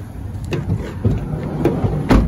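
Footsteps on pavement at a walking pace, about two a second, over a low steady rumble.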